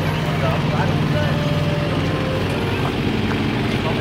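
A large truck engine idling nearby: a steady, loud low hum that holds one pitch, with faint voices over it.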